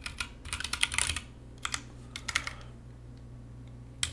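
Typing on a computer keyboard: a quick run of keystrokes through the first second, then a few scattered keystrokes before it goes still.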